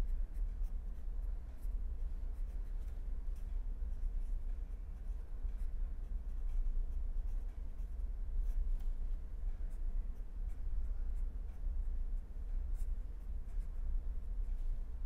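Pen writing on paper: faint, irregular scratches and taps from the pen strokes, over a steady low hum.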